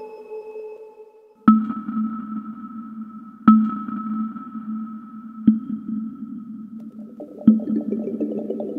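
Mutable Instruments Rings resonator module playing a one-note sequence: the same low pitched note struck every two seconds, four times, each ringing on. Before the first note the tail of a held chord fades out, and near the end a busier layer of short rippling notes joins in.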